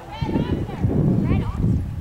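A horse's hoofbeats as it canters on arena sand, under people talking and a loud low rumbling noise that starts about a fifth of a second in.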